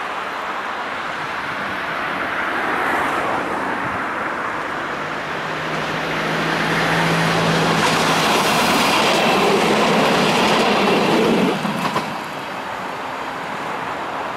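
Stadler GTW 2/6 diesel railcar passing close by: its rolling noise builds, with a steady low hum through the middle. It is loudest as it goes past and drops off sharply about eleven and a half seconds in, leaving steady road traffic noise.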